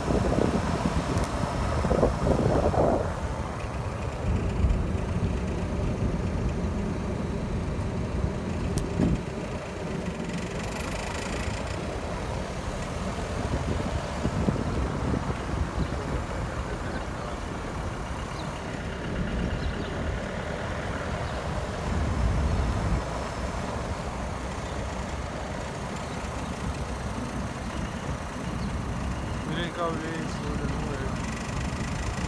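Car driving slowly, heard from inside the cabin: a steady low engine and road rumble with small swells in level.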